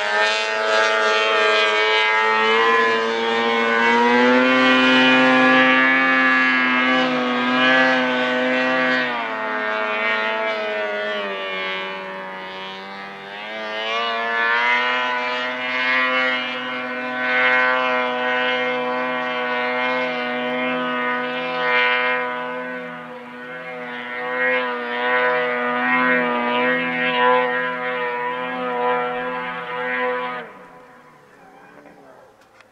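Snowmobile engine held at high revs on a hill climb, a steady high whine that sags in pitch about nine seconds in, climbs back up a few seconds later, and cuts off suddenly at the end.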